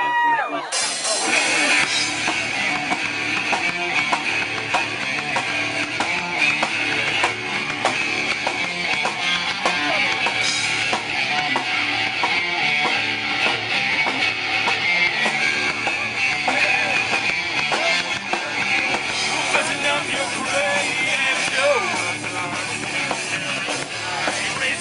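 Live rock band starts a song about a second in, with electric guitars, bass guitar and drum kit playing together loudly.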